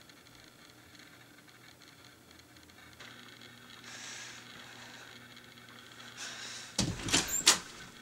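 Near silence, then faint room tone, and a quick cluster of sharp knocks near the end.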